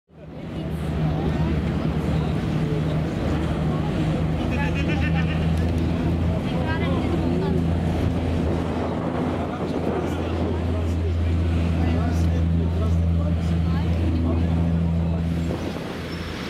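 Boat engine running with a steady low drone, with faint voices in the background.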